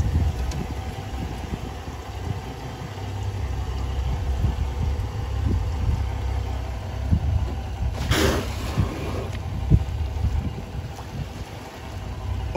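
Steady low wind rumble on the microphone over water moving around a boat's stern, with scattered short knocks and a brief louder burst about eight seconds in.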